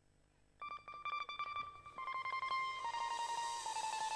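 Near silence, then about half a second in an amplified plucked string instrument starts a fast tremolo-picked melody that steps down in pitch, opening a mor lam sing band's song. A high hiss builds behind it from about two seconds in.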